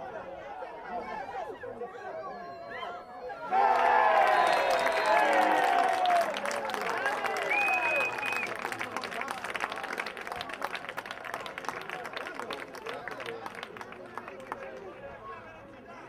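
Players and spectators on the sideline break into sudden shouts and cheers as a goal goes in, a few seconds in. The cheering gives way to scattered clapping and chatter that fade toward the end, with a short high whistle just before halfway.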